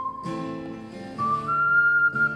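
Ocarina playing the melody over strummed acoustic guitar chords. The ocarina comes in about a second in with a held note that steps up to a higher one.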